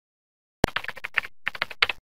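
Keyboard typing sound effect: a quick run of key clicks starting about half a second in, the first the loudest, with a short pause near the middle before a few more clicks.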